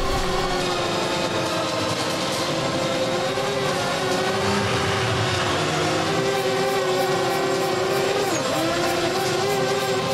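Motorcycle engine running hard at a held, slightly wavering pitch, with a brief sharp dip and recovery near the end.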